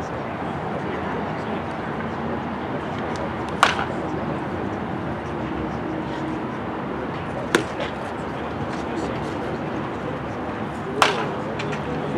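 Three sharp cracks of a baseball bat hitting pitched balls, spaced about four seconds apart, over a steady outdoor background.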